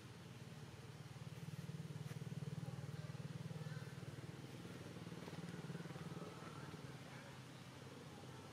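A faint, low motor hum, like a vehicle engine, swelling about a second in and easing off near the end.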